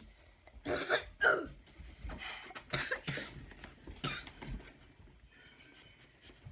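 A person coughing and clearing their throat in a string of short coughs, the loudest about a second in, dying down after about four seconds; coughing of the kind brought on by very spicy chips.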